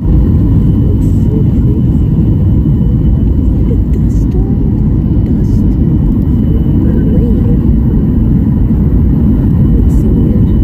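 Cabin noise inside a Southwest Boeing 737 airliner descending on approach: a loud, steady, low rumble of engines and airflow.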